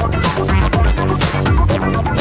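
Psychedelic electronic music from a psybient and downtempo mix: a steady beat of kick drum and hi-hats under short synth notes.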